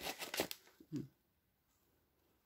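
Kraft paper wrapping on a potted plant rustling and crinkling in quick handling strokes for about half a second, then the sound stops.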